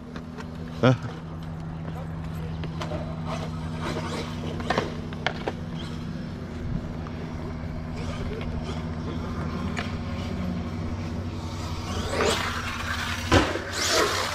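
Arrma Outcast 8S brushless RC truck driving on concrete: scattered sharp knocks and clatters over a steady low hum, then a louder rush of noise and a sharp knock about a second before the end.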